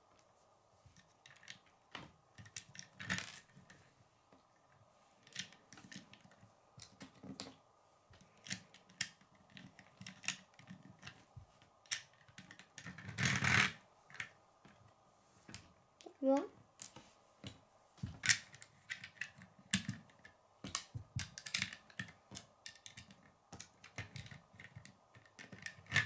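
Plastic Lego pieces clicking and tapping as a small Lego car is handled and set down on a wooden tabletop: sharp, irregular clicks throughout, with a louder rustle about halfway through.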